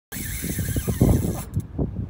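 Fishing reel drag buzzing as a big red drum pulls line against a hard-bent rod. It cuts off about one and a half seconds in, over irregular low rumbling thumps.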